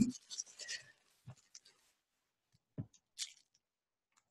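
Faint rustling and handling of paper wrapping, with a few soft scattered taps.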